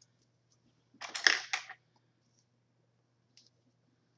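A hot roller being pinned into rolled hair: a short burst of clicking and rustling about a second in, lasting under a second.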